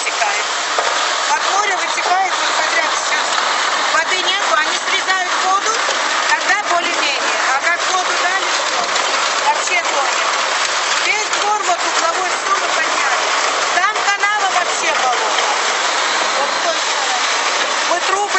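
Steady rush of sewage water pouring out of an opened manhole onto the street, with voices over it.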